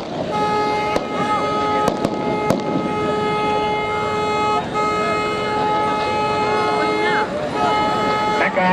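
A horn sounding one steady tone in long blasts, broken briefly twice and again shortly before the end, over the shouting of a large crowd; a few sharp cracks ring out in the first few seconds.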